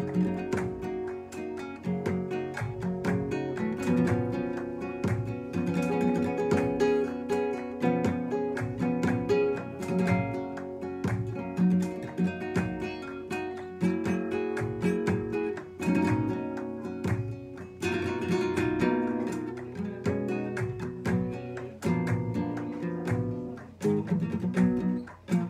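Nylon-string flamenco guitar playing falsetas in the alegrías form: quick picked melodic runs mixed with strummed chords.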